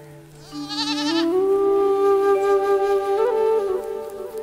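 Flute background music playing a slow melody of long held notes. A goat bleats once, a short quavering call, about half a second in.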